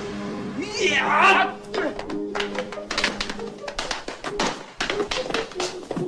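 Film soundtrack music with a quick run of sharp knocks and clicks, and a brief high squeal about a second in.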